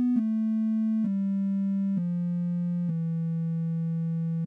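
ReaSynth software synthesizer sounding a triangle wave, played from a virtual MIDI keyboard. It gives a soft, pure-toned line of single notes that steps down in pitch about once a second, each note held until the next begins.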